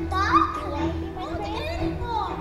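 A young child's voice speaking lines in the play, over steady background music.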